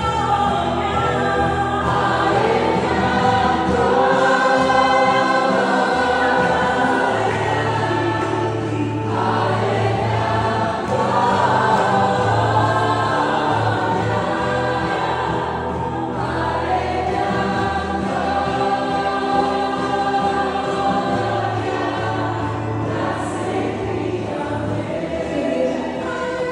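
A church congregation singing a worship song together, many voices in sustained harmony.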